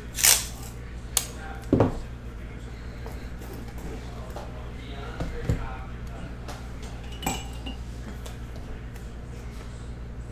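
Handling sounds: a few sharp knocks and clinks of hard objects being picked up and set down on a table, the loudest just after the start, over a steady low hum.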